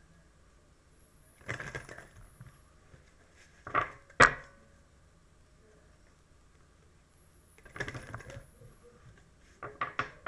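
Tarot or oracle cards being shuffled and handled by hand: a few short rustling bursts, with one sharp snap about four seconds in that is the loudest sound.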